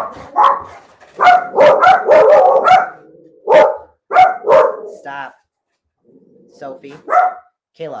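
A dog barking repeatedly indoors: about a dozen sharp barks in quick succession, a short pause, then a few more barks near the end.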